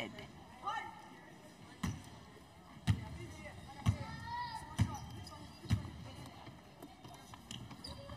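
A basketball bounced five times on a hardwood court, about once a second, as a player dribbles at the free-throw line before shooting.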